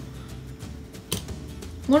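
Soft background music with a single short scrape about halfway through, from a hand-held vegetable peeler drawn over a raw potato.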